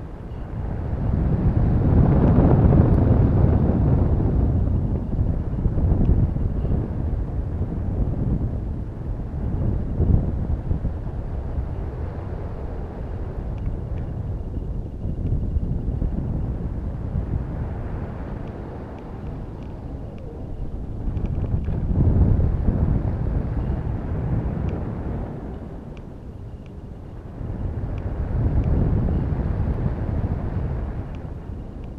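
Wind buffeting the microphone of a camera hanging on a high-altitude balloon's flight line: a low rumbling noise that swells and fades in slow gusts every several seconds.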